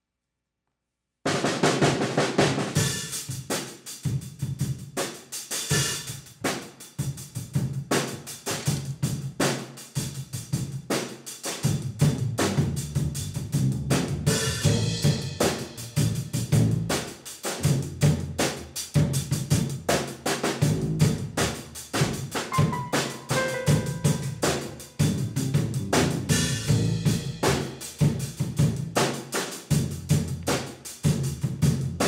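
A jazz band playing, cutting in abruptly about a second in, with the drum kit loudest and bass, guitar, piano and horns behind it.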